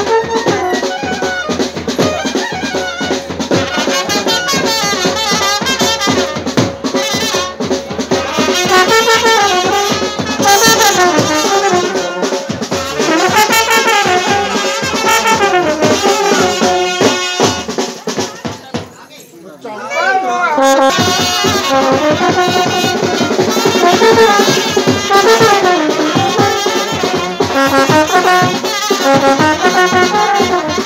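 Himachali wedding band (band party) playing a dance tune: a clarinet and trumpet melody over drums. The music dips briefly about two-thirds of the way in.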